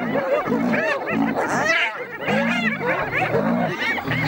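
A clan of spotted hyenas giggling and yelping, many short rising-and-falling calls overlapping, over low growls repeated every half second or so while they mob a lion.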